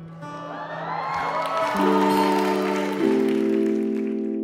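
Slow music of held chords that step upward a few times, with a swell of audience cheering and applause building through it as a stage proposal begins.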